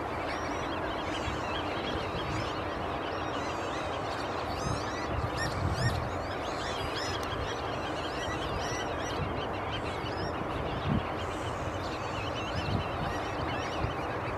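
Dense chorus of many wetland birds calling at once, with many short, overlapping whistled calls and a few louder calls standing out now and then.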